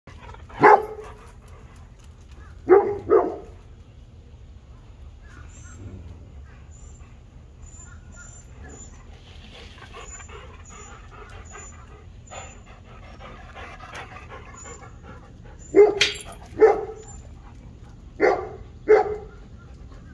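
A dog barking in short, loud barks: once near the start, twice in quick succession about three seconds in, then four more in two pairs over the last few seconds.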